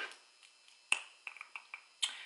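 A sharp click about a second in, followed by a few faint ticks, as a lip liner pencil is picked up and handled with long nails.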